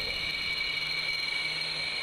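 Steady high-pitched whine of a jet engine, held level with no change in pitch.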